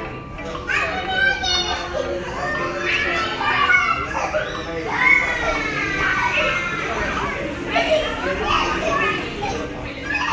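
Children's high voices calling out and shrieking through the play area, with music playing faintly in the background.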